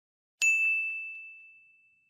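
A single bright bell-like ding about half a second in, with a sharp strike that rings on one clear high note and fades away over about a second and a half.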